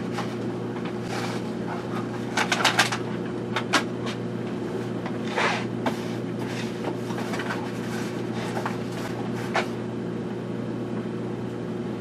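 Boxes and objects being handled on a shelf: scattered knocks, taps and rustles as a small cardboard box is picked out, over a steady low electrical hum.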